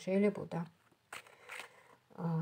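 A voice speaking for about half a second, then a few faint rustles and clicks of hand movement on the table.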